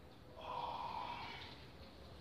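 A man's forceful breath out through the nose and mouth, lasting about a second, from the effort of a dumbbell lift.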